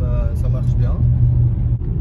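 Steady low rumble of a 2017 Renault Scénic's 115 hp petrol engine and road noise heard from inside the moving car, with a voice briefly in the first second.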